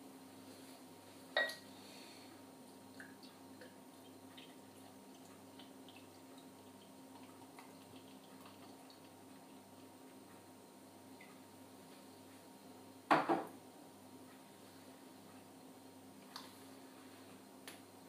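Bottled ale being poured into a pint glass, faint against a steady low hum, with a few sharp glass clinks and knocks; the loudest is a double knock about thirteen seconds in.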